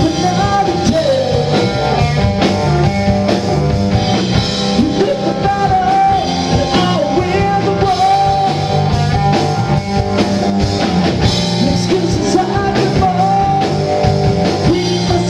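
A live rock band playing: electric guitar, electric bass and a drum kit, with a male voice singing a wavering melody over them.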